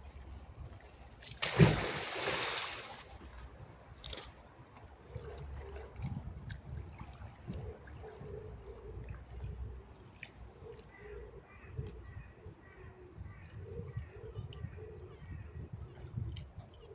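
A magnet-fishing magnet on a rope lands in a canal with one loud splash about a second and a half in, then the water settles.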